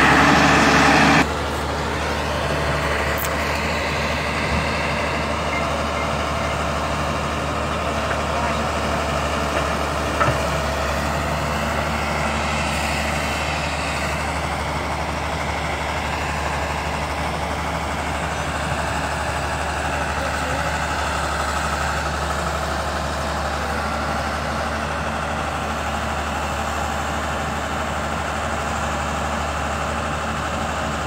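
Samsung hydraulic excavator's diesel engine running steadily as it clears trees and brush. It is louder for about the first second, then drops abruptly to a steady level, with one brief knock about ten seconds in.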